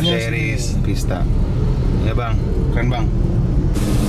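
Steady low engine and road rumble of a car heard from inside its cabin, with people's voices talking now and then over it. A brief rush of noise comes near the end.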